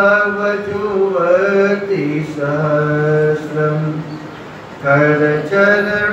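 A man chanting a Sanskrit devotional verse to a slow melody, holding each syllable as a long sustained note and stepping between pitches, with a short pause a little after four seconds.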